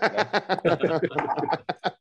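A man laughing in a quick run of short bursts.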